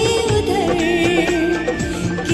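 A woman singing a Hindi song into a microphone over instrumental accompaniment, her held notes wavering with vibrato.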